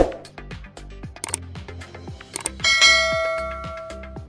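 Subscribe-button animation sound effects over looping background music with a steady beat: a thump at the start and a few clicks, then a bell ding about two and a half seconds in that rings on and fades over more than a second.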